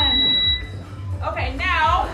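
Digital interval timer giving one long, high-pitched beep for about half a second at the start, marking the minute change between exercise stations. Pop music with sung vocals plays throughout.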